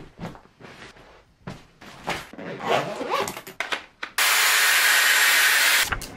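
Clothes rustling and shuffling as they are pressed and folded into an open suitcase, in short irregular strokes. About four seconds in, a loud steady hiss lasting nearly two seconds takes over, then cuts off.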